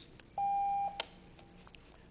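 A single electronic beep, a steady tone about half a second long, followed by a sharp click.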